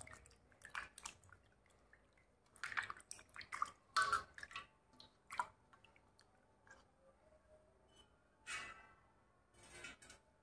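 Pieces of mangur catfish being washed by hand in water in a steel vessel: faint, irregular splashes and wet squelches in short bursts with pauses between.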